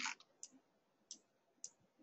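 Faint computer-mouse clicks, about four spread over two seconds, against near-silent room tone.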